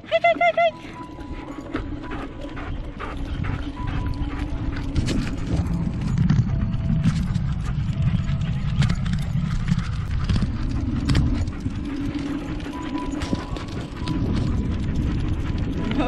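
Two dogs running on leads beside a moving bicycle: quick clicking of their claws on the asphalt over a steady rush of wind and tyre noise that builds over the first few seconds. A brief high-pitched wavering cry right at the start.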